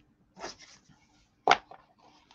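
Sheets of cardstock rustling and sliding against each other as they are handled, briefly about half a second in and again faintly near the end, with the single spoken word "look" loudest in between.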